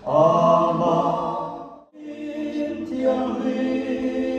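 Mixed a cappella vocal group of men's and women's voices singing held chords into microphones, without accompaniment. The first chord swells and fades out just before the halfway point, and after a short breath a new chord begins and is held.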